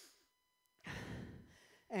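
A person's heavy breathing, close on a headset microphone: after a short silence, one long heavy breath about a second in, lasting about a second.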